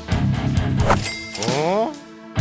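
Background rock music, then an added comic sound effect: a sharp metallic ding about a second in that rings on as a steady tone, joined near the end by a pitched sound sliding upward.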